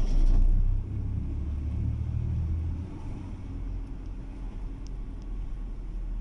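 Car engine running, heard from inside the cabin as a steady low rumble. It is loudest for the first moment and eases a little about halfway through.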